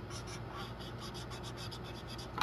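Crayola felt-tip marker scratching on paper in rapid short coloring strokes, several a second, with a steady low hum underneath.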